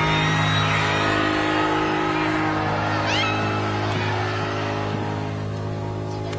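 Live concert sound: a sustained low keyboard chord held under a cheering arena crowd, with a few high shrieks from fans about three seconds in.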